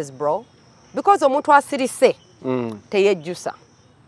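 A person talking, with a high, steady insect trill in the background that comes through in the pauses between words.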